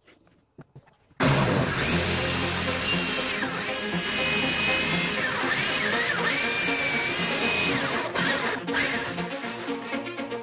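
Electric drill boring into a pool ball held in a vise, starting about a second in; its whine dips and rises as the bit bites, mixed with background music.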